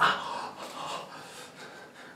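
A man's sharp, noisy breathing in pain just after a wax strip is pulled from his skin, sudden at the start and fading within about a second.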